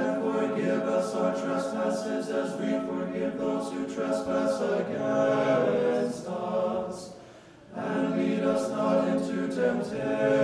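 Church choir singing a cappella in slow, sustained chords, breaking off for a short breath about three-quarters of the way through and then resuming.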